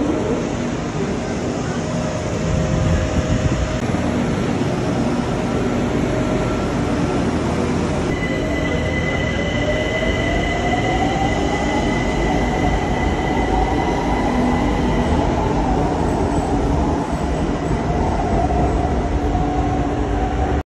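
BTS Skytrain electric train running at an elevated station platform: a steady rumble of wheels on rail, then from about eight seconds in a high electric whine from the traction motors that rises in pitch as the train speeds up.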